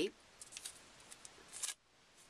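Wood-grain washi tape handled on its roll, its loose end unpeeled and pressed back on: a few faint, short crackles, with a small cluster a little past the middle.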